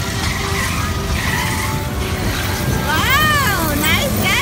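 Spinning fairground kiddie ride in motion: a steady low rumble, with a high squeal that rises and then falls in pitch about three seconds in and a shorter one at the very end.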